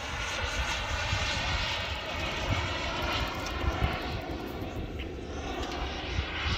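Distant steady engine drone from a radio-controlled model airplane flying overhead, with an uneven low rumble underneath.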